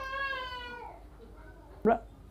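A high-pitched drawn-out vocal call that falls in pitch and fades away within about a second, followed by a brief short sound near the end.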